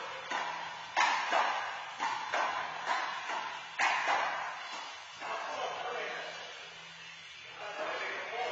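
Handball rally: the rubber ball slapped by hand and rebounding off the court's walls and floor, a string of sharp echoing smacks about every half second, stopping about four seconds in.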